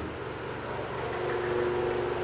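Steady low mechanical hum of room background noise, with a faint steady tone entering in the last half second.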